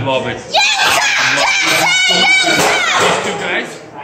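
Spectators yelling and screaming at ringside during a wrestling match, with a loud, high-pitched shriek in the middle.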